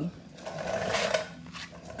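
Plug being pushed into a power-strip socket: a short scraping rattle about a second long, followed by a light click.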